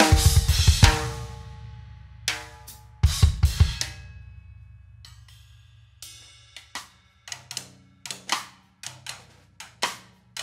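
Solo on a drum kit. It opens with a dense flurry of loud hits with a heavy low end that rings out over the next second, followed by a second burst of heavy low strokes about three seconds in. After a near pause, single sharp strokes return about six seconds in and come quicker toward the end.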